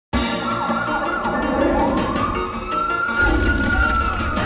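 Emergency-vehicle siren wailing, starting suddenly, its pitch slowly rising and then falling, over a low rumble.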